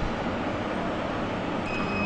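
Steady background hiss and rumble between phrases of amplified preaching, with a faint high steady tone coming in near the end.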